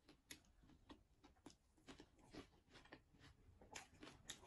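Very faint chewing of a mouthful of crispy fried fish in bread: a steady run of soft crunches and mouth clicks, about three a second.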